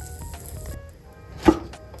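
Soft background music with a simple stepped melody. Under it, faint sizzling from a burger patty in a frying pan stops suddenly under a second in, and a single sharp knock sounds about one and a half seconds in.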